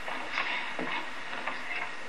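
Quiet studio room tone with a steady hiss and a few faint small noises, the pause on a film set between the slate and the call of action.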